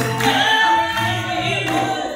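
Live Amazigh rways music: the lead singer's voice holds a long line with gliding pitch over a light accompaniment of lotar lutes and ribab.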